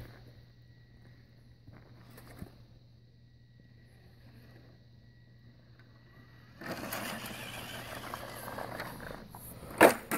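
Radio-controlled scale crawler truck driving up a boulder. At first its electric motor and gears give only a faint thin whine as it creeps forward. Past the middle, a louder even grinding of drivetrain and tyres on rock and gravel runs for about three seconds, and a sharp knock comes just before the end.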